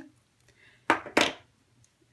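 Two short, sharp clacks about a third of a second apart: metal jewelry pliers being set down on a hard tabletop.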